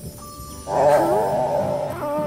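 A long, wavering, growl-like cartoon sound effect that starts about two-thirds of a second in and is the loudest thing heard.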